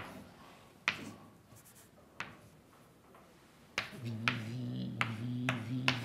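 Chalk writing on a blackboard: a few sharp taps of the chalk striking the board, a second or so apart, with faint scraping between. In the last two seconds a steady low hum runs under the writing.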